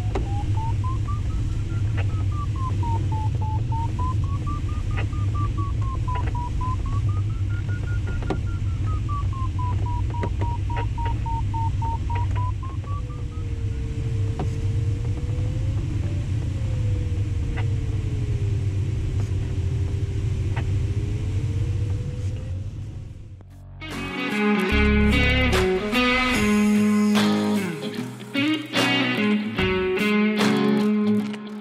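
Steady rush of airflow in a Schempp-Hirth Ventus 2cT glider's cockpit, with a continuous variometer tone sliding up and down in pitch; the tone drops lower about halfway through. About 23 seconds in, the sound cuts abruptly to music with electric guitar.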